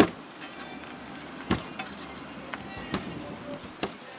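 Propeller shaft knocking in a worn-out cutlass bearing as the heavy propeller is heaved up and let down. There is one sharp knock at the start, then four lighter ones over the next few seconds. The clunks come from the play of the shaft in the bearing.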